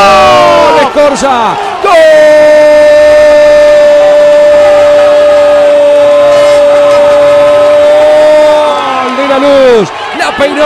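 A football radio commentator's goal cry: a few short falling shouts, then one long 'gooool' held on a single pitch for about six seconds and falling away near the end, announcing a goal.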